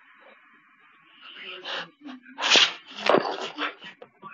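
A dog making several short vocal sounds in play, the loudest about halfway through.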